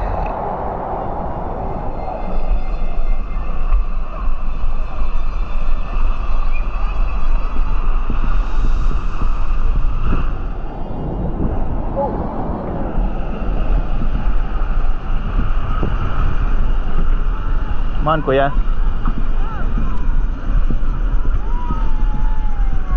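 Wind rumbling on the microphone over a steady outdoor rush, with a brief high hiss about halfway through and a few spoken words near the end.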